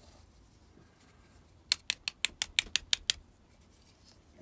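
A quick run of about ten light metallic clicks starts just before halfway and lasts about a second and a half. They are made by steel tweezers working in the pin chambers of a Medeco lock cylinder housing to get the springs out.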